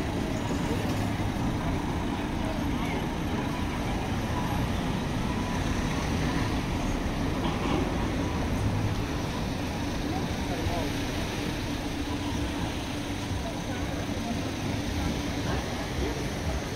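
Steady street ambience: passing car traffic with the chatter of people walking by.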